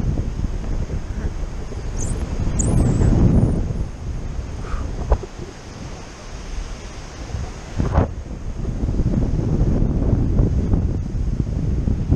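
Airflow from a paraglider flight rushing over a camera microphone as steady wind noise. It eases off for a few seconds in the middle, with a couple of brief knocks, then comes back up.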